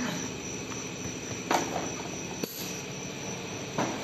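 Vertical automatic cartoning machine running: a steady mechanical hum with a thin, high, steady whine, and three sharp knocks, about one and a half, two and a half and nearly four seconds in.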